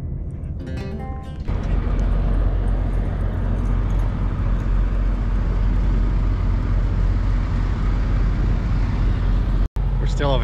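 Acoustic guitar music for about the first second and a half, then a sudden cut to a loud, steady rumble and hiss of idling semi-truck engines. The rumble breaks off for an instant near the end.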